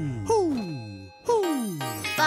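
Cartoon sound effects over a children's music jingle: two falling, whistle-like swoops about a second apart, each sliding down over most of a second, with light tinkling tones behind.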